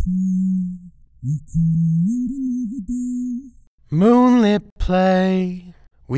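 A sung vocal phrase with its midrange cut out by EQ, leaving only the low fundamental of the held notes and a thin high hiss, so the voice is hard to recognise. About four seconds in, the same singing plays at full range with all its harmonics, plainly a voice.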